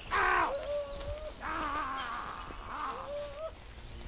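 Woodland birds calling: a loud harsh call at the very start, then several longer pitched calls, with quick high chirps of small birds over them.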